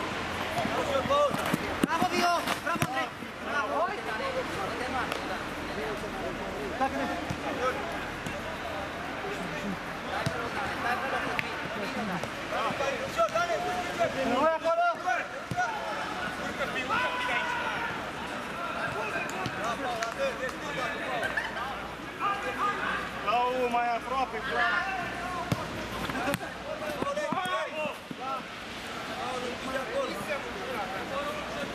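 Players shouting and calling to each other during a small-sided football match, with occasional thuds of the ball being kicked on artificial turf.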